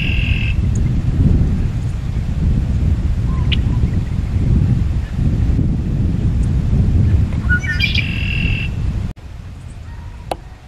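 A songbird singing two short phrases, one right at the start and one about eight seconds in, each a few quick rising notes running into a brief trill, with a single short chirp between them. Wind rumbles loudly on the microphone underneath and drops away suddenly a little after nine seconds.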